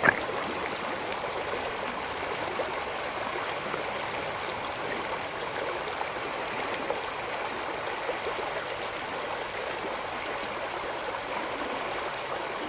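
Shallow river water running and burbling over rocks in a riffle, a steady rushing with small splashes, with one sharp click right at the start.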